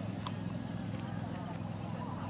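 A horse's hoofbeats at the canter on a sand arena, over a steady low background rumble.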